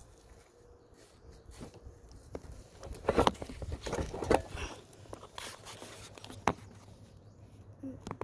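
Light handling noises from a hand working close to the microphone: scattered clicks and rubbing, busiest from about three to five seconds in, with a single click later on.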